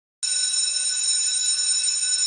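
A sustained electronic tone of several high pitches held together, starting abruptly and staying steady: the opening sound of the programme's title sequence.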